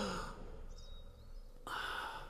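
A person's voiced sigh trailing off with falling pitch, then a second breathy sigh near the end. Faint high chirps are heard in between.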